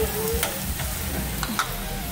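Meat sizzling steadily on a gas tabletop barbecue grill, with a few sharp clicks along the way.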